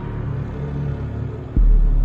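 Intro sound design: a deep, rumbling bass drone, with a new low hit coming in suddenly about one and a half seconds in.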